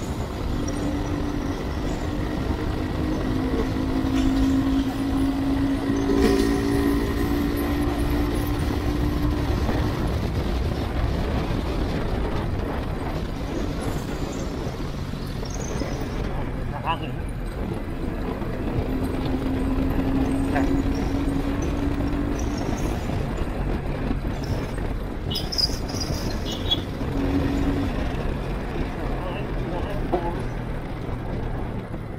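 Motorcycle riding, heard through a microphone inside the rider's helmet: a steady rumble of wind and road noise with the engine running. A steady engine tone is strongest through the first ten seconds and comes back around twenty seconds in.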